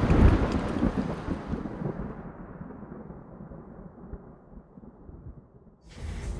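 Rumble of a large explosion dying away, fading steadily over about five seconds from loud to faint, then cut off abruptly near the end.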